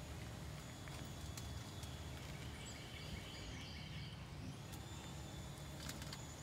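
Quiet outdoor background: a steady low rumble under faint, steady high-pitched tones, with a single click near the end.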